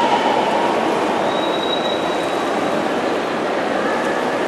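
Steady din of an indoor swimming pool during a race: swimmers' splashing blended with the voices of spectators into one continuous wash of noise. A thin high tone sits above it from about a second in.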